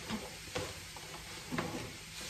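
A waffle-weave cotton towel rustling as it is pressed and smoothed into a cardboard box, with a couple of faint handling taps against the box.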